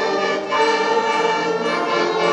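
School concert band of woodwinds and brass playing held chords, breaking briefly about half a second in before the next chord comes in.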